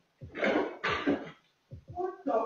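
A person coughing: two short, harsh bursts about half a second apart.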